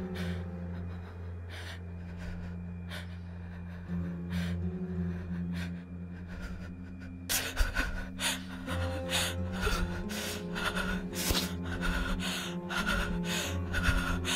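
Tense film score of steady low drone tones, under a woman's frightened gasping breaths that come thicker and louder from about halfway through.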